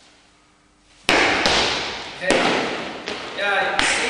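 Heavy thuds on a wooden parquet floor, typical of foot stomps in a martial-arts demonstration, ringing in the hall. Two loud ones come about a second apart after a quiet first second, then a lighter one, with a short voice sound near the end.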